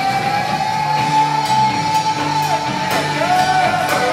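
A live funk-rock band playing, with electric guitars, bass guitar and drums: a long held high note wavers and then bends down about two-thirds of the way in, over a repeating bass line and a few cymbal hits.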